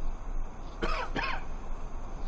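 A man's voice makes two quick, short throat sounds about a second in, like a small cough, over a steady background hiss.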